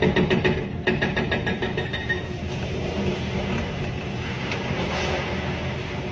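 An excavator demolishing a brick building: a fast, even clatter of about five beats a second for the first two seconds, then a steady rumbling as the masonry breaks up and a section of the building collapses.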